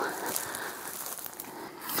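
Footsteps rustling and swishing through tall dry grass.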